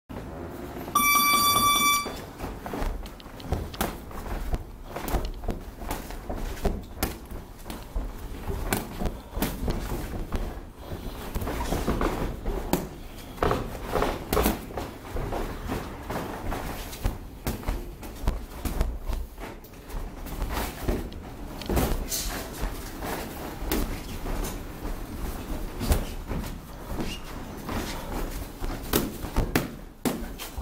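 A boxing round timer gives one steady, high electronic beep lasting about a second, which starts the round. Then two boxers spar, with irregular slaps and thuds of gloves landing and shoes scuffing on the ring canvas.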